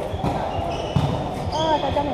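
A volleyball being struck during a rally in a large hall, with a couple of sharp smacks about a quarter second and a second in, amid players' shouts.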